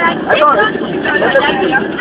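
Several voices talking over one another inside a coach, with the coach's running noise underneath.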